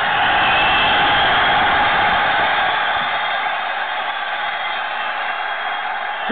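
Audience applauding and cheering as a live rock song ends, a dense clapping noise that slowly dies down.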